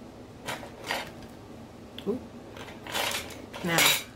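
Makeup brushes being handled and swapped, giving a few short clinks and taps.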